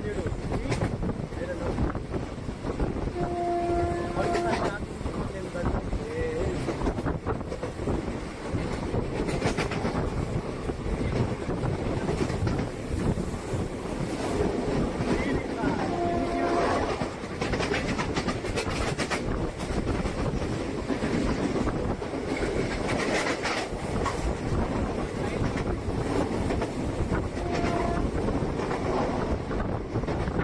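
Passenger train running at speed, heard from inside a general coach: a steady rumble with rail clatter. Three short horn blasts sound, about three seconds in, about sixteen seconds in and near the end.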